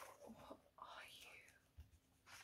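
Near silence, with a woman's faint breathy whisper.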